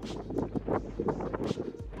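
Wind buffeting the camera's microphone: a gusty, rumbling rush of noise.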